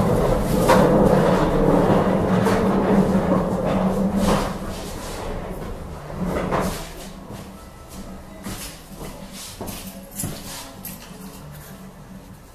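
A wooden cabinet on casters rolled across a wooden floor: a steady rumble for about the first four seconds, then a couple of knocks, after which the sound dies down to faint room noise.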